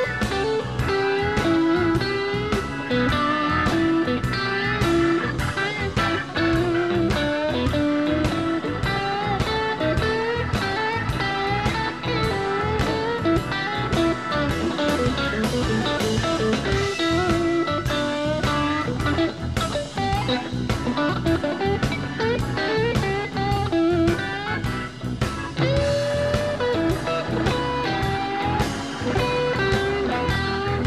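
Live blues band playing an instrumental break: electric guitar lead lines over a steady drum beat and keyboards.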